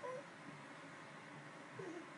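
A toddler's brief high-pitched vocal squeaks: one right at the start and another near the end, faint over quiet room tone.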